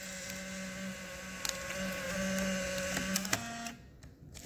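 Fujifilm Instax Mini 9's film-ejection motor whirring steadily as it drives the dark slide out of a freshly loaded film pack, then cutting off about three seconds in.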